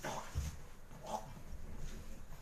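Boxing sparring in a ring: a soft low thud about half a second in, then a short, sharp grunt-like exhalation from a boxer about a second in.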